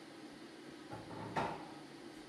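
A soft knock about a second in, then a single sharp click, the loudest sound, about half a second later, over faint room tone.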